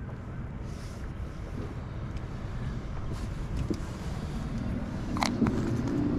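Steady low rumble of wind buffeting the microphone on an open boat, with a few faint clicks and one sharper knock about five seconds in.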